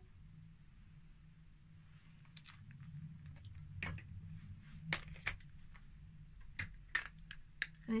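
Faint, scattered small clicks and rustles of hair being sectioned by hand, over a low steady hum.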